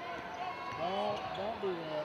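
A basketball being dribbled on a hardwood court, under voices in the arena.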